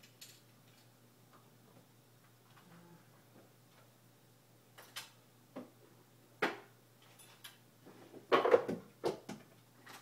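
Scattered knocks and clatters from someone rummaging through things while searching for a misplaced balisong knife. The first sharp knocks come about five seconds in, and the loudest is a clatter a little past eight seconds.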